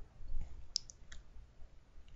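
A few faint, short clicks close together around the middle, over quiet room tone.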